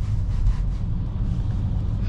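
Steady low rumble of engine and road noise heard inside a moving Opel Insignia's cabin.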